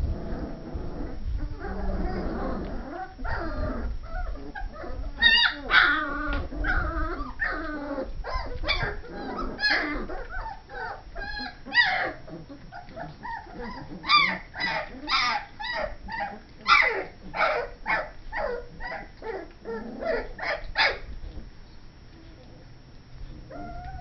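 A litter of puppies yipping and whimpering: many short, high-pitched cries in quick succession, some in rapid runs, with lower shuffling noise in the first few seconds.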